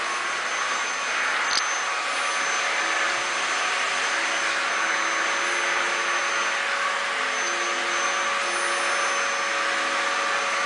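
A loud, steady whooshing noise like a running motor or fan, with a faint hum under it and no change in level. There is one small click about one and a half seconds in.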